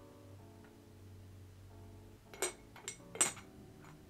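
Ceramic teapot lid clinking against the pot three times in the second half, the last the loudest, over soft background music with held tones.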